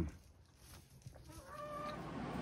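Domestic hens making soft clucking sounds, ending in one short held call near the end.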